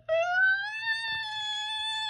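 A voice holds one long suspense note, broken briefly at the start, then climbing slowly in pitch and levelling off high about halfway through. It is a build-up of suspense before an announcement.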